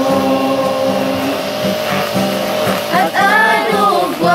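A mixed group of young voices singing a gospel song in unison, in the Ayangan Ifugao language. They hold a long note, then move into a new phrase that rises in pitch about three seconds in.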